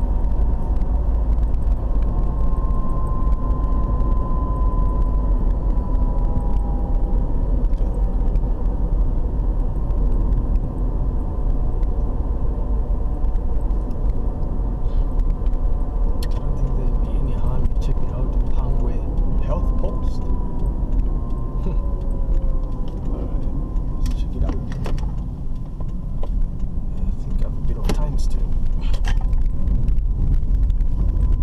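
Car driving at road speed, heard from inside the cabin: a steady low rumble of engine and tyre noise. In the second half there are a few short clicks or rattles.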